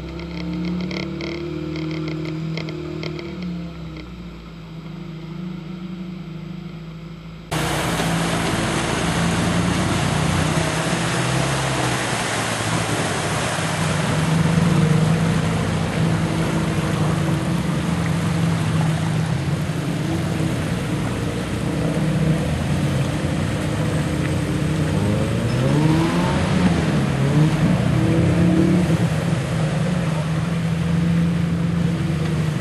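Mercedes-Benz 230GE G-Wagen's engine running under load off-road. About seven seconds in, the sound switches abruptly from on board to outside the vehicle, with a loud steady rushing noise over the engine. Near the end the engine revs up in several rising sweeps.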